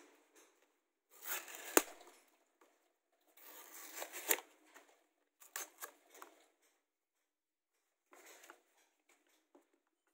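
Paper and thin card packaging being torn and crumpled by hand, in four short rustling bursts with a sharp snap in the first two.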